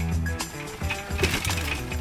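Instrumental background music. From about halfway through, a clatter of short knocks and rattles joins it as the Surly Big Dummy cargo bike rolls over rock.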